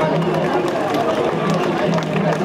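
A large crowd of mikoshi bearers chanting together in a repeating rhythm, with the hubbub of many other voices around them.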